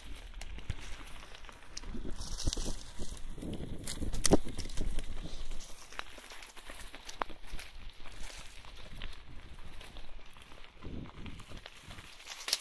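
Bicycle tyres rolling over dry leaf litter on a forest trail, a steady crackling rush with frequent clicks and rattling knocks from the bike. It is busiest with the loudest knocks about four seconds in, and eases off after about six seconds.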